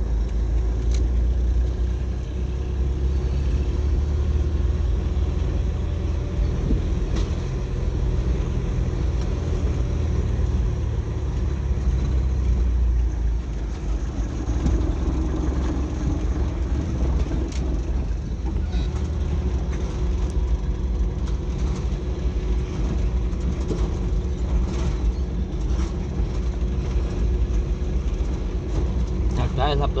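Car driving slowly along a street of interlocking concrete pavers, heard from inside the cabin: a steady low rumble of engine and tyres.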